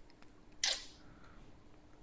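A quiet pause with a faint steady hum, broken once, a little over half a second in, by a short hissing noise.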